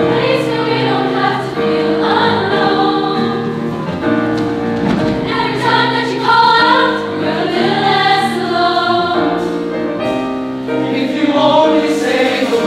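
Mixed choir of young singers singing, with piano chords held underneath the voices.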